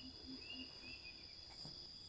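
Faint outdoor insect ambience: a steady high-pitched drone like crickets, with a few short chirps in the first second.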